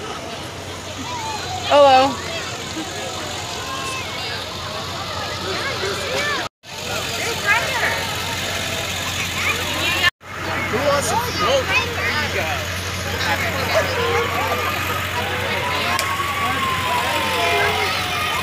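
Parade street sound: vehicles rolling slowly past with engines running under a steady low hum, amid crowd chatter and shouts, with one loud shout about two seconds in. The sound cuts out abruptly twice.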